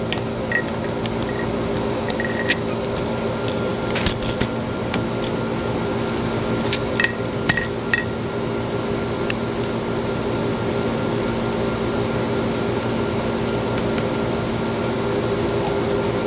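Steady hum and fan noise of running process equipment, with several steady tones in it, and a few light clicks about 4 and 7 to 8 seconds in.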